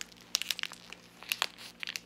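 Thin plastic film wrapper of an imitation crab stick crinkling and tearing as it is peeled open by hand, in a series of irregular sharp crackles.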